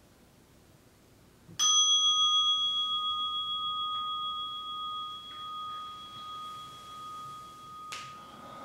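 A meditation bell struck once, about a second and a half in, then ringing on with a slowly fading, wavering tone, marking the end of a 30-minute meditation sitting. A short soft knock near the end.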